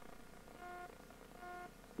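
Faint electronic beep tone, two short beeps about three-quarters of a second apart, each lasting about a third of a second, over low room noise.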